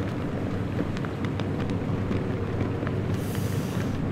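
Steady low outdoor rumble of the waterfront, with a brief high hiss about three seconds in.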